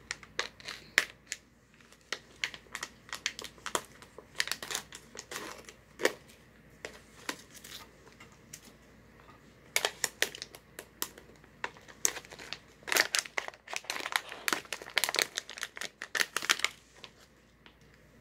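Clear plastic resealable snack pouch crinkling as it is handled and opened, in clusters of short crackles with quieter gaps between.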